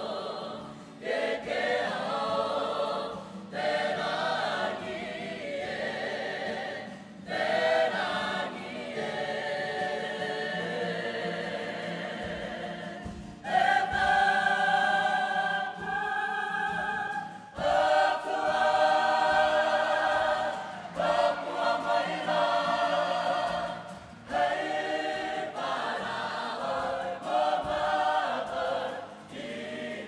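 Kapa haka group of men and women singing together as a choir. The song comes in phrases broken by short gaps every few seconds, loudest about halfway through.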